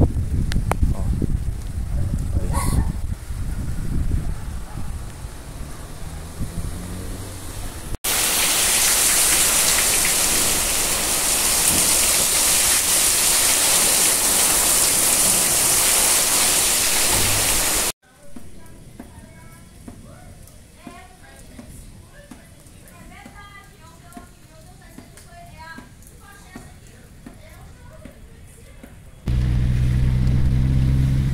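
Storm wind buffeting the microphone with a low rumble that dies down, then, after a cut, about ten seconds of a heavy rain and wind downpour as a loud, steady hiss. After another cut it is much quieter with faint distant voices, and near the end a car engine starts running close by.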